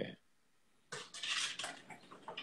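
Dishes and cutlery clattering in a kitchen, starting about a second in after a short quiet.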